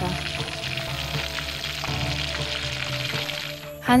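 Cartoon sound effect of food sizzling and frying in a pan, a steady crackle that stops just before the end, over soft background music.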